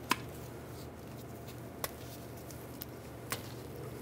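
Wire cutters snipping through a gray wire with a sharp click at the start, followed by a couple of fainter clicks from handling the harness, over a low steady hum.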